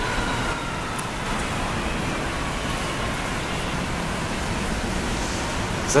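Airliner's jet engines at takeoff thrust during a rainy takeoff roll: a steady rush with a faint whine that slowly falls in pitch.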